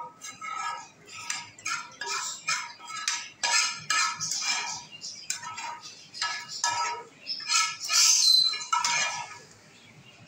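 Metal spoon scraping and clinking against a frying pan in short strokes, about two a second, as spiced oil and masala are scraped out into the pickle.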